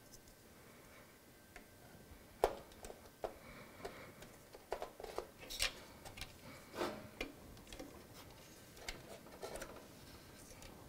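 Faint, scattered clicks and light plastic knocks of RAM modules being worked out of and into a desktop motherboard's memory slots, the slot latches snapping. The sharpest click comes about two and a half seconds in, with a busier run of clicks in the middle.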